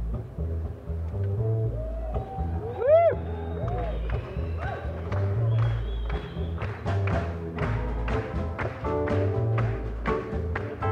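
Live acoustic band playing a song intro: an upright double bass plays a bass line under sliding lap steel guitar notes about three seconds in. Rhythmic drum taps join about seven seconds in.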